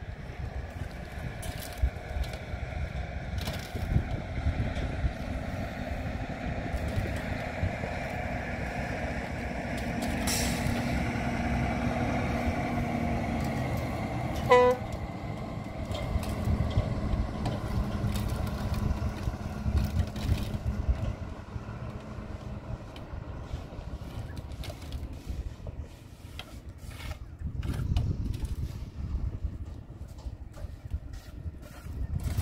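A truck engine running nearby, its low rumble swelling through the middle, with one brief high-pitched squeal about halfway through. Light taps and scrapes of a mason's trowel on concrete blocks and mortar come through now and then.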